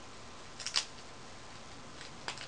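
A short cluster of small sharp clicks about two-thirds of a second in, from fetching a new cotton swab, over a steady low hiss.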